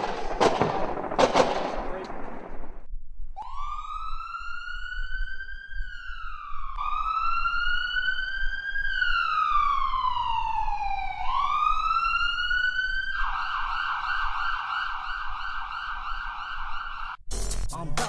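Several sharp bangs, then an electronic siren wailing, its pitch sweeping up and down in long slow glides. About thirteen seconds in it switches to a fast steady warble. Music starts near the end.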